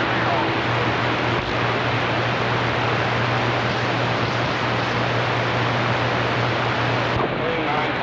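CB radio receiving on channel 28 with skip open: a steady wash of band static and hiss from the speaker, with faint garbled distant voices buried in it and a steady low hum. The hiss thins in the high end near the end.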